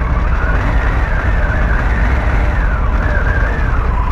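Harley-Davidson Pan America's Revolution Max 1250 V-twin running as the bike rolls at low speed, a steady low rumble with wind noise on the camera microphone.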